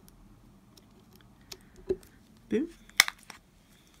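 Small handling sounds of diamond painting: a few light clicks as drills are placed with tweezers, then a sharp click about three seconds in, followed by a couple of smaller taps.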